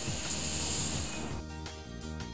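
Air hissing out of a blood-pressure cuff as the screw valve on its rubber inflation bulb is loosened to deflate it; the hiss fades out about a second in. Soft background music plays under it and carries on alone.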